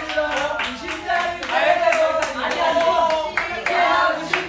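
A group of young men clap in rhythm and sing or chant along together with loud voices, with hand claps cutting through about two or three times a second.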